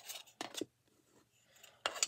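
Thin wooden cutouts lightly scraping and tapping against a wooden sign board as they are slid into place, with a sharp click near the end.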